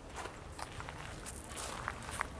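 Footsteps walking along a garden path: several short, crisp steps a few times a second, over a steady low rumble.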